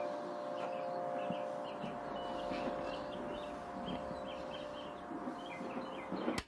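Faint tail at the end of a sped-up pop song recording: a steady hiss under two held tones, with small high chirps scattered throughout.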